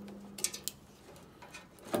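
A few faint, separate clicks and taps as a battery charger and its cable are handled and moved.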